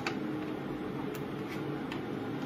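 Electric kettle that has just boiled, giving a steady soft rush with a few light ticks.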